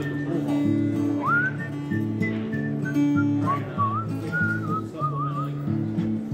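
Acoustic guitar playing a country accompaniment in steady bass and chord notes, with a whistled melody over it that glides up about a second in and wavers with vibrato in the second half.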